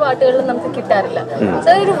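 Speech only: a conversation between a man and a woman.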